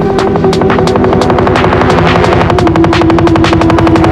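Dark drum and bass track playing a rapid rolling figure of many evenly spaced hits a second, over a held synth tone that steps down in pitch about two-thirds of the way through.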